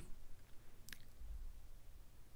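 Quiet room tone with a low hum, broken by a single faint short click about a second in.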